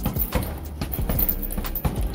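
Boxing gloves punching a heavy punching bag in a rapid flurry, about five thuds a second, over background music.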